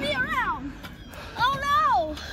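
A child's high-pitched voice making two wordless, sing-song calls that glide in pitch. The first falls away at the start, and the second comes a little over a second in, rising, holding, then dropping.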